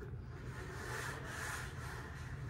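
Dell MS700 Bluetooth travel mouse slid across a smooth desk top, a steady rubbing of its plastic base on the surface.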